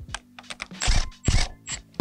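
Sharp metallic clicks and taps of a steel shackle bolt and shackle being handled by hand at a leaf-spring shackle, loudest about a second in, over background music with a steady low drone.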